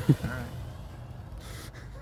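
A man's voice trails off briefly at the start, then only low, steady outdoor background noise.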